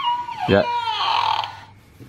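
Pennywise talking toy playing a recorded high, wavering, exorcist-like wail through its small speaker. The wail glides down and fades out about a second and a half in.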